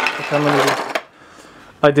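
Hard plastic 3D-printed PLA heads clattering and knocking against each other in a box as gloved hands rummage through them, for about the first second, with a short voiced sound over it. After that it goes quieter.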